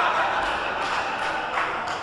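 Theatre audience clapping in a steady, even burst of applause.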